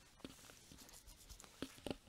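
Faint taps and scratches of a stylus on a graphics tablet, with a few short clicks, two close together near the end.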